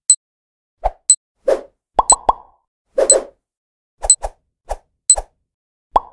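Cartoon sound effects of an animated countdown: a string of short pops and plops, about two or three a second, some with sharp high clicks, including a quick run of three about two seconds in. It stops right at the end.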